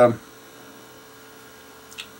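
Steady electrical mains hum at a low level, with a single faint tick just before the end.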